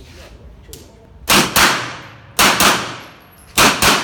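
Short carbine fired in three quick pairs of shots, the pairs about a second apart, each shot ringing off the walls of an indoor range.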